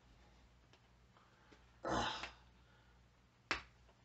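A single sharp plastic click, about three and a half seconds in, as the pull-ring seal is torn off the spout of a heavy whipping cream carton.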